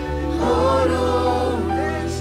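Gospel song: a choir singing held notes over a steady low bass, growing louder about half a second in.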